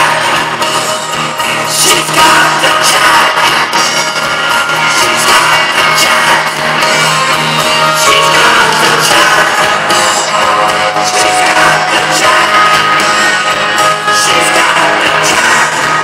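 Live rock band playing loudly through a large hall's PA, heard from within the crowd: electric guitars over drums.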